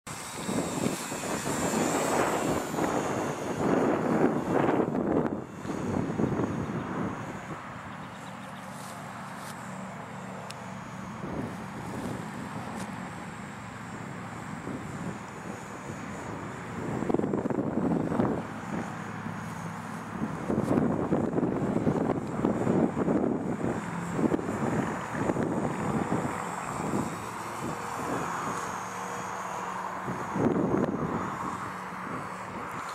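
Thin, high whine of a Parkzone UM P-51D's small electric motor and propeller, wavering up and down in pitch as the plane flies around. Wind rumbling on the microphone in gusts is the louder sound.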